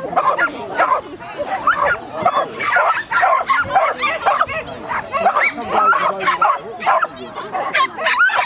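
A dog yapping and barking over and over, high short yips, with people's voices mixed in.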